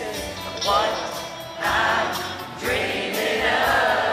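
Live country band playing with a regular drum beat while several voices sing together.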